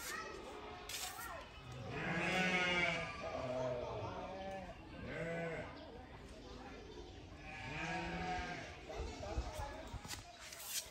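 Indistinct voices, with several drawn-out, wavering calls that rise and fall in pitch, the strongest about two seconds in and again near the end.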